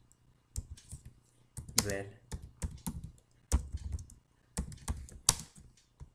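Typing on a computer keyboard: a run of irregular keystroke clicks, a few of them noticeably louder than the rest.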